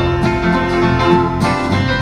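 Live band playing an instrumental stretch between sung lines, plucked guitar notes over a sustained note, heard from far back in a concert hall.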